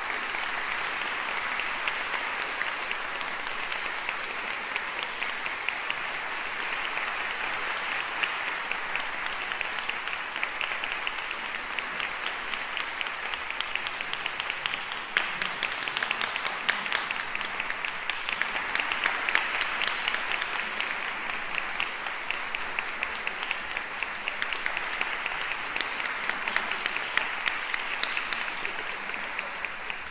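Audience applauding: many hands clapping in a dense, steady patter that holds throughout.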